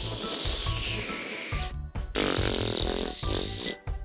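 Background music with a steady beat. Over it plays a swishing hiss, then about two seconds in a gurgling sound of a mouth being rinsed.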